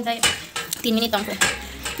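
Metal pots, pans and dishes clattering as cookware is handled and set down on a crowded kitchen counter, giving several sharp clinks and knocks.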